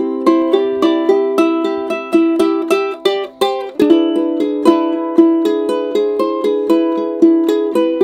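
Luna Uke Henna Dragon laminate concert ukulele being finger-picked: a steady run of single plucked notes, about three or four a second, moving to a new chord shape about four seconds in. The finger-picked tone is quite pretty, sweeter than the same instrument strummed.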